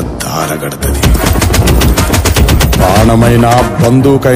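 Trailer-style soundtrack: a rapid, even run of sharp cracks over a low rumble for about two seconds, followed by a voice with music near the end.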